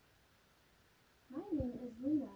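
A small child's voice vocalizing in a rising-and-falling, whiny tone, starting a little over a second in after a near-silent pause.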